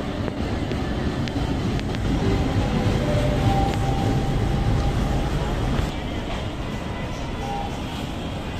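Diesel locomotive and passenger coaches rolling slowly into a station, a steady low rumble that swells in the middle as the train passes close by and then eases off.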